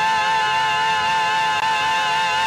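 A woman singing one long high note with vibrato, held steady without a break.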